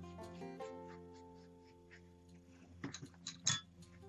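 Quiet plucked-string background music, its held notes ringing and fading away. A few brief soft clicks and rustles come about three seconds in.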